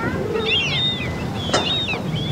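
Many birds calling over one another in short, quick chirps and squawks, with a single sharp knock about one and a half seconds in.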